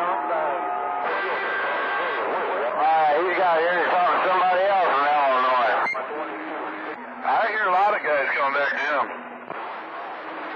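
CB radio receiving long-distance skip on channel 28: garbled transmissions with strongly wavering, warbling tones, thin and muffled through the radio's narrow audio. The signal weakens near the end.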